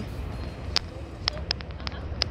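Outdoor waterfront ambience: a steady low rumble with several sharp clicks in the second half.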